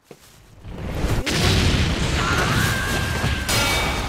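Animated sound effect of a blast: a sharp crack about a second in, then a long boom with deep bass.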